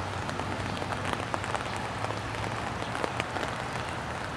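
Steady rain with scattered sharp drop taps, over a low steady rumble from the rear boxcars of a freight train rolling away.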